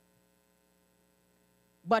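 Faint, steady electrical mains hum from the microphone and sound system during a pause, a few constant tones with nothing else. Near the end a woman's voice starts a word.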